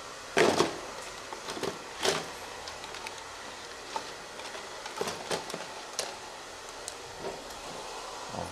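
Steady barbershop room noise with a couple of brief, louder knocks, one just after the start and one about two seconds in, followed by a few faint clicks.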